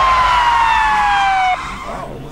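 Police siren sound effect: one tone that slides steadily down in pitch and cuts off suddenly about one and a half seconds in.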